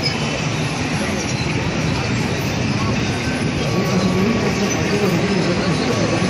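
Steady city din of street traffic heard from above the rooftops, a continuous wash of engines and road noise, with a wavering engine-like hum growing a little louder in the second half.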